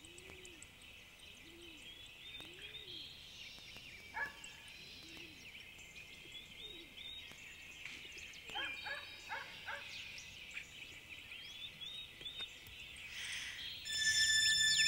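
Faint birdsong: many small birds chirping and twittering together, with a few sharper calls about two-thirds of the way through.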